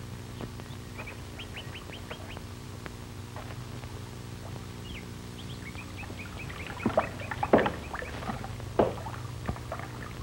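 Birds chirping in quick runs of short high notes, twice, over a steady low hum on the old film soundtrack. Several sharp knocks come near the end.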